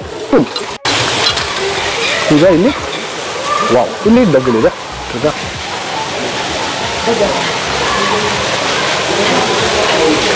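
Steady rush of running water from an indoor pond that starts suddenly about a second in, with people's voices over it.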